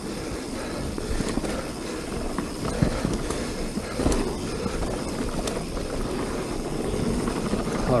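Mountain bike rolling fast down a dirt singletrack: steady tyre and wind noise with the bike rattling over the bumps, and a few sharp knocks about three, four and five and a half seconds in.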